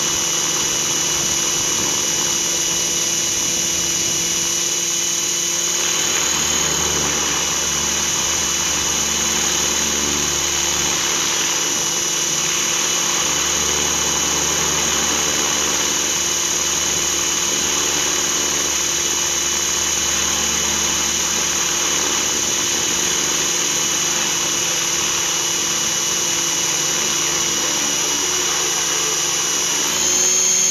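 Align T-Rex 500 electric RC helicopter in flight, heard from a camera mounted on the helicopter itself: a steady high whine from the motor and drive gears over the rotor noise, holding level throughout.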